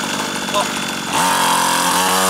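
Small two-stroke engine of a children's mini dirt bike idling. About a second in, the throttle opens and the engine revs up quickly, then holds a steady high buzz.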